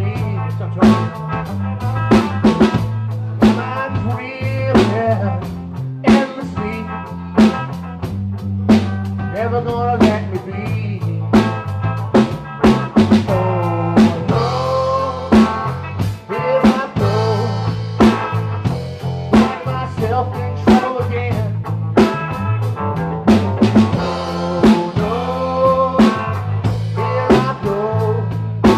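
Live blues band playing: electric guitar over bass guitar and a drum kit.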